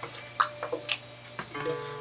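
A few scattered sharp clicks, then about a second and a half in, acoustic guitar strings sound and ring on.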